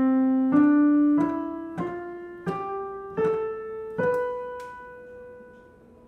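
Piano playing a C major scale upward from C, one note at a time, stopping on the seventh note, B, which is held and left to fade. Ending on that leading tone leaves the scale unresolved, with a strong pull up to the C above.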